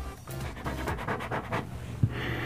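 Fingernails scratching at paper wallpaper in a quick run of small scrapes, with close-up sniffing at the wall. Background music underneath.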